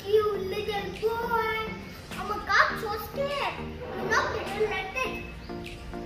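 A young boy speaking, telling a story, over a steady background tone.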